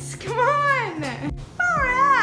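Two long meows, each rising then falling in pitch, the second beginning near the end.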